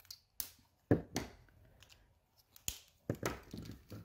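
Plastic Stampin' Blends alcohol markers being handled on the table: a series of short clicks and knocks as markers are capped, set down and picked up, the loudest about a second in.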